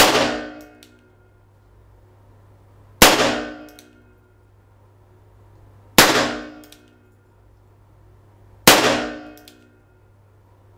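Four single-action shots from an Enfield .38 service revolver, fired one at a time about three seconds apart. Each shot rings and echoes off the hard walls of an indoor range for about a second, and a faint click follows each one.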